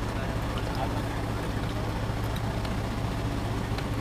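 Steady low hum of a Ford Edge SUV running while it reverses slowly into a parallel-parking spot under active park assist.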